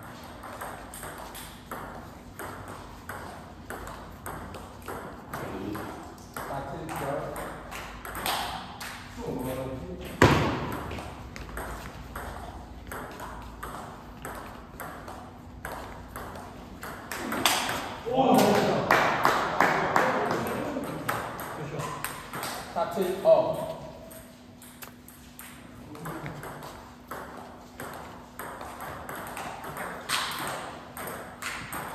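Table tennis ball being hit back and forth, a run of sharp clicks off bats and table in quick rallies, with one louder knock about ten seconds in.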